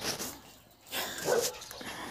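A puppy making a short, rough vocal sound about a second in while play-fighting.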